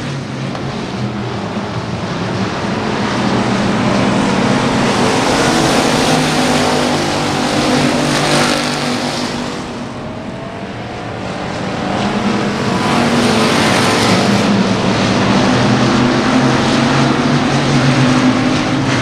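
Several factory stock dirt-track race cars running at speed, their engines a steady droning mix. The sound swells as the pack passes, falls away about ten seconds in, then builds again as the cars come round.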